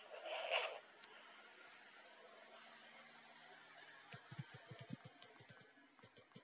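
Fingers tapping on a smartphone's touchscreen keyboard, heard through the phone's own microphone: a quick, irregular run of soft taps starting about four seconds in, after a stretch of faint background hiss.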